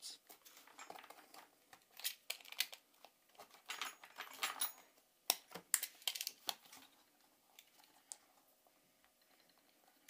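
Utility-knife blade scraping and prying at the glued rubber back panel of a Blackview BV6000 rugged smartphone: irregular clicks and short scrapes, with a few sharp clicks about five to six seconds in and quieter handling near the end. The panel is glued on firmly and does not come away.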